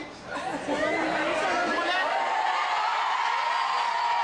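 Theatre audience laughing and chattering, many voices at once, swelling up about a third of a second in and then holding steady.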